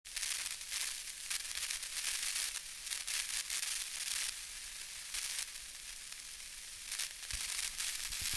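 Static sound effect: a crackling hiss like a detuned television, mostly high-pitched, with frequent crackles. It thins out over the last few seconds, and a couple of low thumps come near the end.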